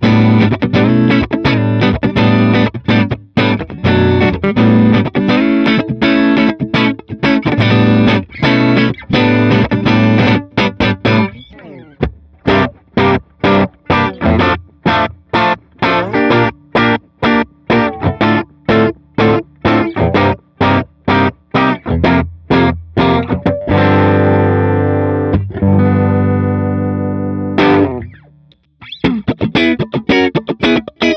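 Squier Affinity Jazzmaster electric guitar with ceramic-magnet Jazzmaster pickups, played amplified as choppy, rhythmic strummed chord riffs: first on the neck pickup, then on the bridge pickup from around the middle. Near the end it stops briefly and starts again with both pickups on.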